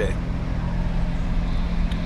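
Car engine and road noise heard from inside the cabin: a steady low rumble with a constant hum.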